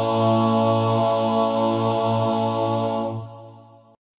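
Voices singing the closing held chord of a hymn on its last word, the chord held steady and then fading out near the end.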